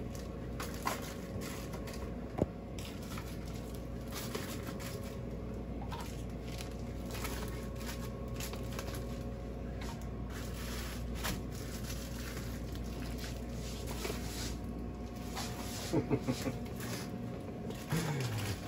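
Wrapped frozen food packages being set into a freezer door shelf: scattered light knocks and plastic crinkles over a steady low hum, with a few short vocal sounds near the end.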